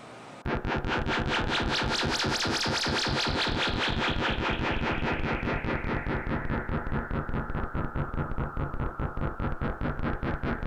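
Electronic trance music from hardware synthesizers. A rapid, evenly pulsing noisy sequence starts suddenly about half a second in, and its brightness slowly falls as a filter sweep closes.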